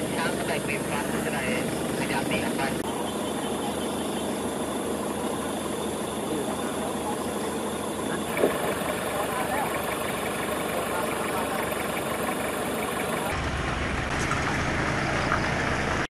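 A vehicle engine running steadily, with faint voices in the background. The low rumble grows stronger about 13 seconds in.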